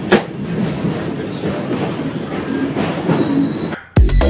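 New York City subway car in motion, heard from inside the car: a steady rattling noise with a sharp click near the start and faint high wheel squeals from about one and a half seconds in, cutting off just before the end.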